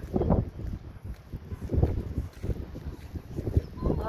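Wind buffeting the microphone in uneven gusts, a rough low rumble that swells and drops irregularly.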